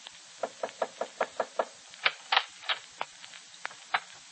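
Radio-drama sound effect of footsteps on a hard floor, about fourteen sharp steps: a quick run of seven, then a slightly slower run of seven.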